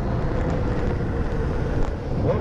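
Wind rushing over a helmet-mounted microphone on a moving Honda motorcycle, with the engine running steadily underneath.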